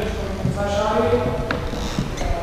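Children's voices chattering and calling out in an echoing school gym, with scattered knocks and one sharp click on the wooden floor.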